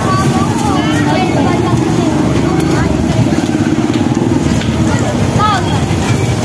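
People talking in the background over a loud, steady low rumble.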